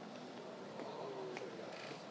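Quiet room tone in a press room, with faint, indistinct voices in the background and a couple of soft ticks.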